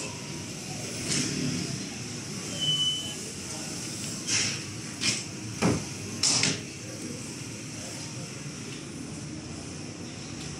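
Short rubbing and scraping swishes of a wooden door panel and frame being worked by hand, a cluster of them between about four and seven seconds in, one with a dull knock, over a steady low background hum.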